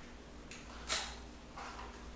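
Clothes and hangers being handled on a closet rod: one sharp click of a hanger about a second in, then softer rustling of fabric.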